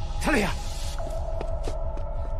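Film score drone: a low, rapidly pulsing throb like a heartbeat under steady sustained tones. A brief falling vocal sound comes about a quarter second in.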